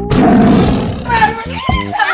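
A loud roar like a big cat's, lasting about a second, used as an edited-in sound effect, followed by background music.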